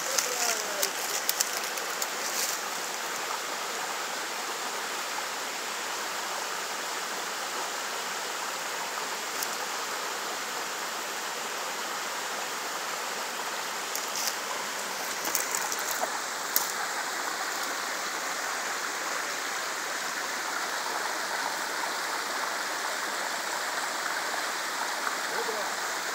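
Steady rush of water from a nearby waterfall and stream, with a few brief clicks near the start and again about two-thirds of the way in.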